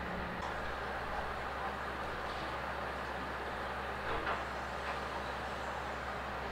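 Steady low hum and hiss of room noise, with a faint, brief handling sound about four seconds in.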